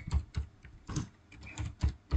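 Computer keyboard being typed on: a run of separate key clicks, about four a second.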